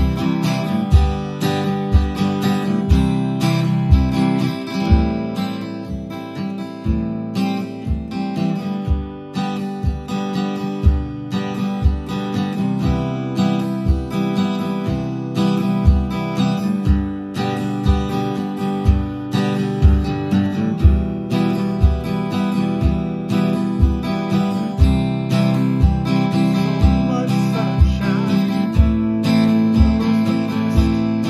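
Steel-string cutaway acoustic guitar strummed with a pick through a chord progression, with a low thump on every beat, about two a second, from a bass-drum stomp box.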